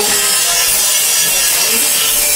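A power tool running continuously, a steady loud hiss with a faint whine, as when wood is being cut.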